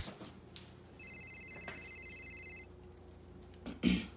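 A phone ringing: one electronic ring of several steady high tones, starting about a second in and lasting about a second and a half. Near the end, a short loud cough.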